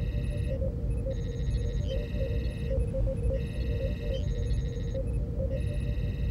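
Starship-style computer ambience: a steady low rumble under repeated bursts of rapid trilling electronic beeps, each lasting about a second, with soft blips running beneath.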